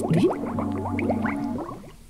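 Underwater bubbling sound effect for a submarine: a stream of short rising bubble blips over a steady low drone, fading out a little before the end.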